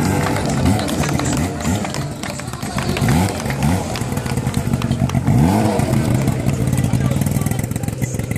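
Portable fire pump's engine running steadily, with men's voices talking and calling out over it.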